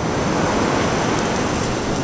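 Steady wash of ocean surf breaking on the beach: an even, unbroken rush of noise.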